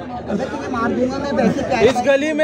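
Several men's voices talking over one another, loud and overlapping.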